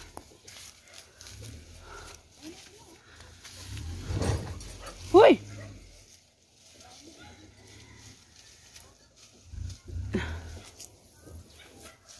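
A dog gives one sharp, high yelping bark about five seconds in, over a low uneven rumble.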